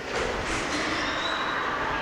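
Shredded foil snack-wrapper strips crinkling as handfuls are pushed into a cloth pillow casing, a steady rustling noise.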